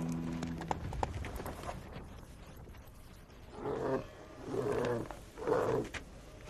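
A camel groaning in a series of short, rough bellows, about one a second, in the second half, as it is pulled down by its halter to kneel.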